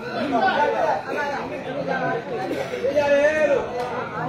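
Men's voices talking over one another: crowd chatter.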